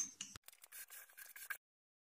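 Plastic Rummikub tiles clicking faintly against each other and a wooden tabletop as a hand moves them, with a sharper click at the start. The sound cuts off abruptly about a second and a half in.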